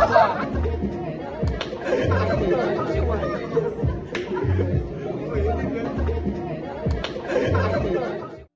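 A group of people chattering and laughing over background music with a steady bass beat.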